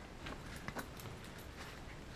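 Faint handling noise, a few light clicks and rustles, as a BlackRapid nylon sling strap is lifted out of a padded camera bag.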